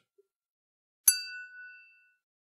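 A single bright, bell-like 'ding' sound effect struck once about a second in, ringing out and fading within a second.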